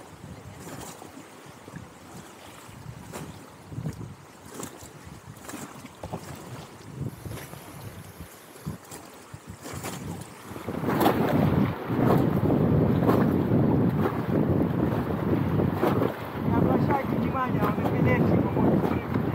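River water rushing and splashing against an inflatable raft on a fast mountain river, with wind noise on the microphone. About eleven seconds in it turns much louder and stays loud.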